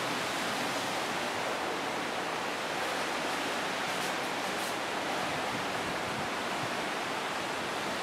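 Steady rushing of sea water past a moving ship, an even hiss with no breaks.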